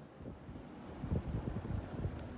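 Air thrown down by a spinning Hampton Bay Grayton II ceiling fan buffeting the microphone up close under the blades: a low, irregular, gusty rumble that sets in just after the start and grows louder through the second half.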